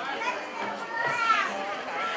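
Overlapping voices of spectators at the ground, with children's high voices calling out over one another; one call falls in pitch about a second in.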